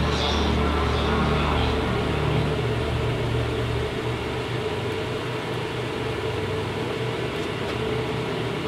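Motorboat engines idling in a canal lock, a steady low hum that eases off about three to four seconds in.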